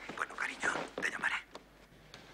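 A woman's quick, breathy gasps for about a second and a half, then a brief lull.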